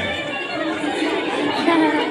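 Chatter of a seated audience of children, many voices overlapping, with a music track playing underneath.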